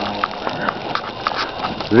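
Plastic shopping bags rustling as they are carried, heard as a string of short crackles and clicks.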